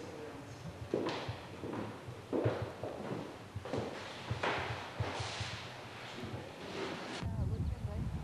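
Footsteps knocking on a wooden floor, about seven hollow steps at walking pace. Near the end the sound gives way to a low wind rumble on the camcorder microphone.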